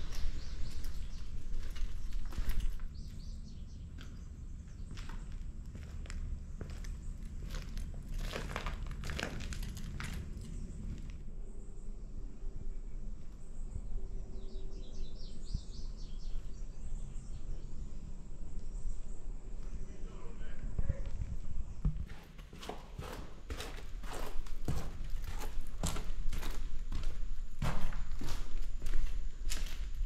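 Footsteps crunching over debris on a concrete floor, dense for the first few seconds and again through the last several seconds. In a quieter stretch between them, birds chirp faintly.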